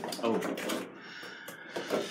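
A brief spoken "Oh", then faint rustling and crinkling as a boxed set of pumpkin lights in clear plastic packaging is handled and lifted.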